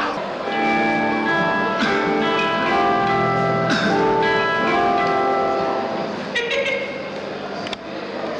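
A live rock band playing slow, held notes that shift to a new pitch about every second, with hardly any drumming.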